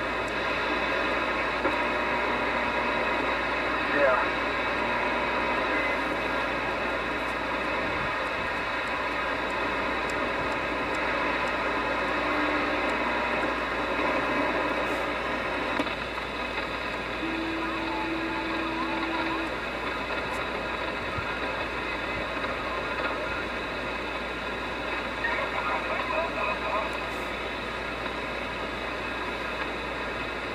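A Galaxy DX2547 CB base station receiver plays steady hiss and static through its speaker as it is tuned across the channels in sideband mode. Snatches of garbled distant voices come through at times, and a short steady carrier tone sounds past the middle.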